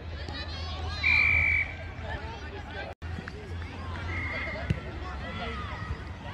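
An umpire's whistle blown in one short, steady blast about a second in, the loudest sound here, then a fainter short blast about three seconds later, over distant chatter of spectators and players.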